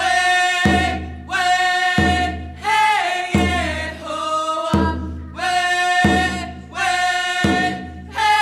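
A group of voices singing a Haida dance song in unison, each phrase starting on a stroke of a hand-held hide frame drum, about one beat every second and a half.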